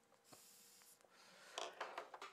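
Near silence in a small room, with a faint short hiss and then a few brief soft rustling noises near the end.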